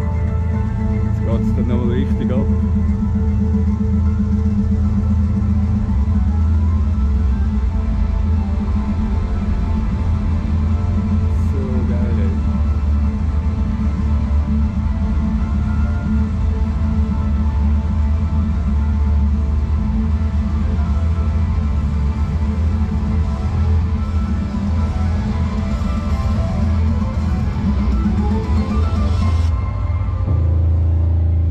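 Loud music played through the speakers of many parked Tesla cars during their synchronized light show, with a heavy, steady bass.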